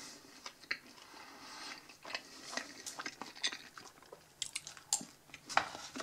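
Close-up chewing of a mouthful of crusty baguette dipped in creamy meat salad, with irregular sharp clicks throughout.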